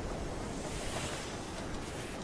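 Ocean waves, with one wave washing through as a swell of hiss about a second in, over a steady low rush of the sea.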